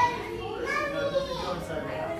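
A young child's high voice, talking or vocalising without clear words.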